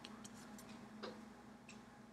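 Near silence: room tone with a low steady hum and a few faint, irregularly spaced clicks.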